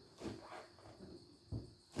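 Faint sticky peeling of cloth trousers pulling away from still-tacky, not yet cured epoxy on the boat's wooden stringers: two soft rasps, one just after the start and one near the end.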